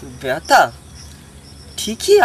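Insects chirring in a steady, faint, high-pitched drone behind a man's short bursts of speech.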